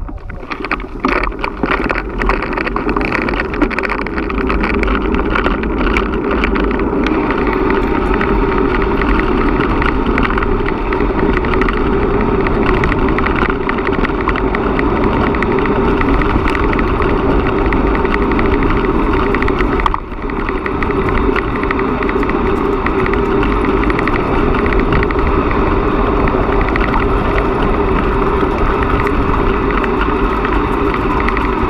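Steady rush of wind over an action-camera microphone and tyre noise from a bicycle rolling on a gravel track, growing louder over the first few seconds as the speed picks up. The loudness dips briefly about two-thirds of the way through.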